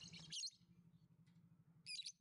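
Caged lovebird giving two short, high-pitched chirps, one at the start and one near the end.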